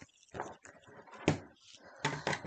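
Cardstock and cut paper border strips being handled and shuffled on a tabletop: soft rustles and small clicks, with one louder knock a little past halfway as the strips are set into a paper trimmer.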